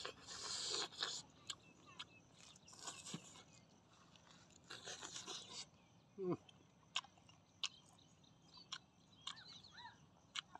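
Close-up chewing of grilled meat, with wet mouth clicks and smacks. There are short rustling bursts near the start and about five seconds in, and a brief falling 'mm' from the eater about six seconds in.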